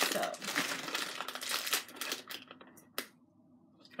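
Plastic bag or packaging crinkling as it is handled for about two and a half seconds, then a single sharp click about three seconds in.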